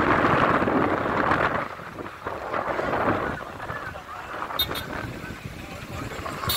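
Rushing noise of wind on the microphone mixed with vehicle noise, loudest for about the first second and a half and then dropping to a lower steady level.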